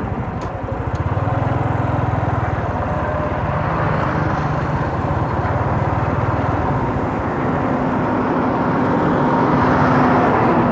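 Engine and road noise from a vehicle travelling a rough dirt road, with a heavy multi-axle dump truck's diesel engine growing louder as it approaches and passes close by near the end.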